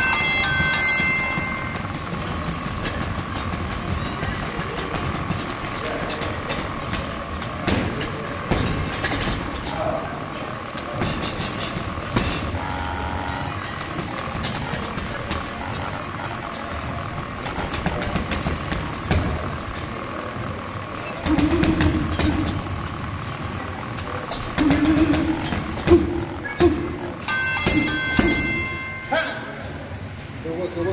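Boxing-gloved punches knocking on a heavy bag at irregular intervals, over background music, with a denser run of heavier hits late on. A held pitched tone sounds at the start and again shortly before the end.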